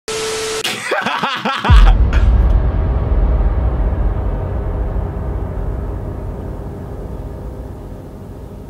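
Edited intro sound effects: a TV-static hiss with a steady tone, then about a second of glitchy electronic stuttering, then a deep boom that rumbles on and slowly fades away.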